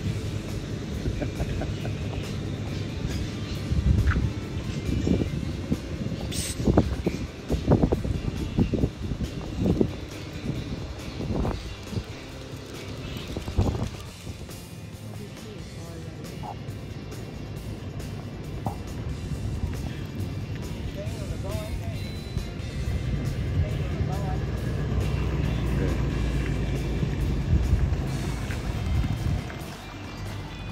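Background music, with irregular knocks in the first half and a steady low hum over the last few seconds.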